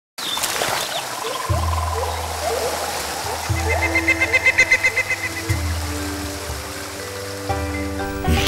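Rushing, splashing stream water over music made of sustained low notes that shift every couple of seconds, with a rapid pulsing trill about halfway through.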